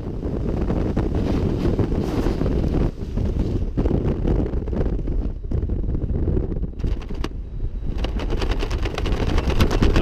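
Wind buffeting a camera microphone during a descent under an open parachute canopy: a steady low rushing, with a few brief crackles in the second half.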